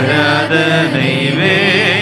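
Man singing a Tamil worship song through a microphone, in long held notes that waver in pitch.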